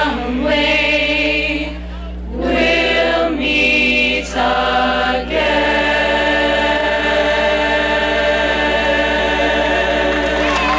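Mixed choir of young men and women singing, in short phrases with brief breaks through the first half, then holding one long chord from about halfway through.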